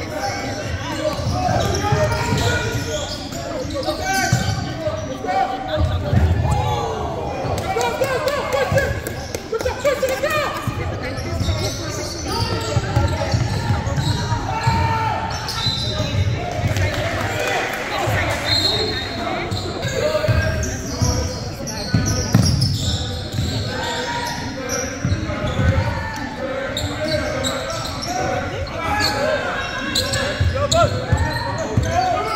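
Basketball dribbled on a gym floor in repeated bounces, with sneaker squeaks around the middle and indistinct voices of players and coaches, all echoing in a large gym.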